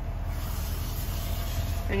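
Steady low outdoor background rumble, with a faint high hiss through most of the two seconds.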